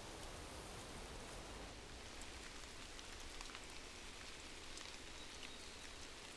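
Faint, steady light rain, with scattered small drop ticks.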